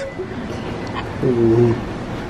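A brief low hum from a person's voice, lasting about half a second just past the middle, over faint room noise.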